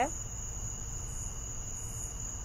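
A steady high-pitched whine with a low hum beneath it: background noise of the recording, with the tail end of a spoken word at the very start.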